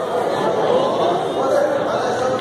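Indistinct chatter of several men talking at once, steady throughout.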